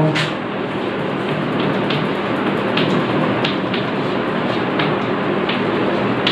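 Chalk clicking and scratching against a blackboard as words and numbers are written, with short irregular clicks over a steady background hiss.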